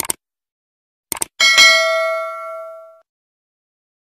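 Subscribe-button animation sound effect: a quick double click, another double click about a second in, then a bright notification-bell ding that rings out and fades over about a second and a half.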